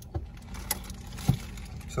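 Honda City's petrol engine idling, heard as a steady low hum inside the cabin, with a few light clicks and a sharp knock about a second and a half in.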